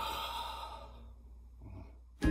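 A soft, breathy sigh, an exhale that fades out over about a second, over a steady low room hum.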